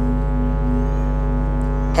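Background music: a single sustained chord held steady, with a deep low note underneath.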